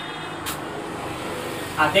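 Steady background noise with a single sharp click about half a second in. A man's voice starts speaking near the end.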